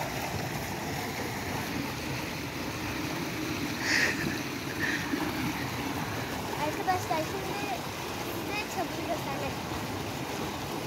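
Small creek running steadily over stones, with two short high-pitched sounds about four and five seconds in.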